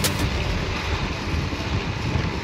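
Steady wind rumble on a moving camera's microphone, heaviest at the low end, as it rides along a velodrome behind a track cyclist.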